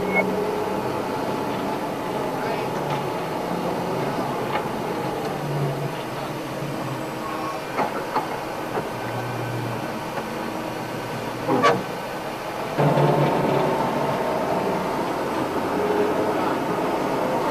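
Stryker eight-wheeled armoured vehicle running on the move, heard from inside the crew compartment as a steady rumble and rattle. It has a few knocks around the middle and gets louder near the end.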